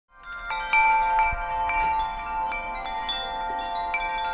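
Tubular metal wind chime ringing, its tubes struck two or three times a second, the several notes ringing on and overlapping.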